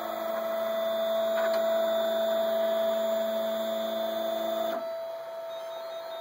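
MakerBot Replicator 5th generation 3D printer running at the start of a print, its extruder heated to 227 °C: a steady whine of several tones that cuts off suddenly about five seconds in, leaving a faint hum.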